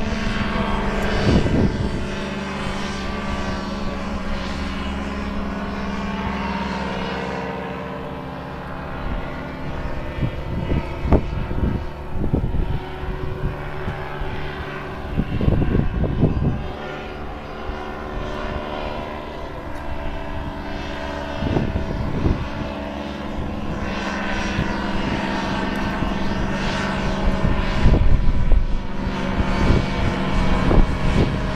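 Quicksilver MX ultralight's engine and propeller droning in flight overhead, the pitch sliding up and down as it manoeuvres and passes. Several brief low thumps break in.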